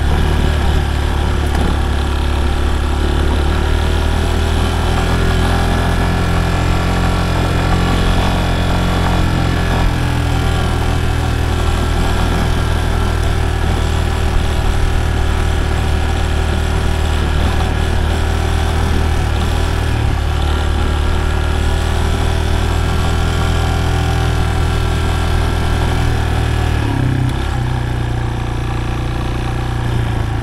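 Yamaha Serow 250's air-cooled single-cylinder four-stroke engine running steadily while the bike is ridden. The engine note shifts and drops slightly in level about three seconds before the end.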